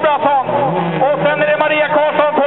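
A man's commentary voice talking continuously, with race car engines running underneath.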